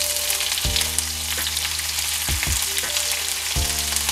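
Sliced onions sizzling as they are tipped into a hot frying pan of oil and melting butter.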